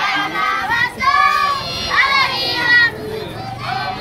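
A group of young children singing together, with held, bending notes.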